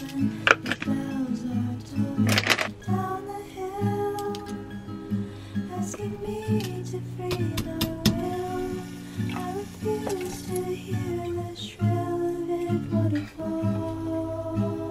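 Background music with acoustic guitar and slow, sustained melody notes. A few short knocks sound over it in the first few seconds.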